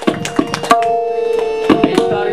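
Tabla solo in teentaal: the pair of drums struck with both hands, a quick run of strokes at the start, sparser playing in the middle and a further flurry near the end, over held ringing tones that change pitch now and then.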